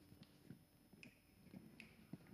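Near silence: studio room tone with a few faint, short clicks spread across the two seconds.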